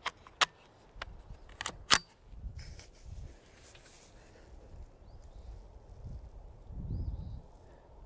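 A few sharp metallic clicks and clacks from a Kidd Supergrade 10/22 rimfire rifle being handled and readied to fire, the loudest about two seconds in, followed by faint low thuds as the shooter settles in behind it.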